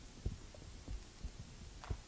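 Faint, scattered low thuds from a person moving about, over a steady low room hum; one thud near the end is a little louder.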